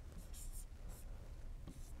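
Faint scratching of a stylus on a tablet screen, a few short strokes as terms of an equation are handwritten.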